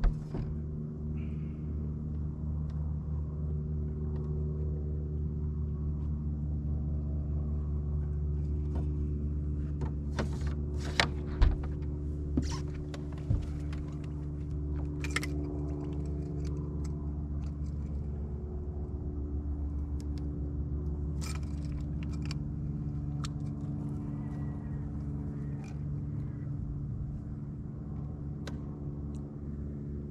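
A boat motor gives a steady low hum throughout. Over it come scattered clicks, clinks and rattles of the fish and tackle being handled, with a few sharper knocks about eleven to thirteen seconds in.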